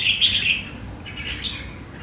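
Red-whiskered bulbul singing: a warbled, wavering phrase that fades out about half a second in, followed by a fainter short phrase a little after a second.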